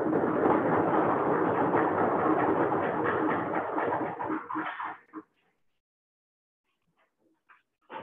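Audience applause heard through a video-call link: about five seconds of dense clapping that stops suddenly, then near silence.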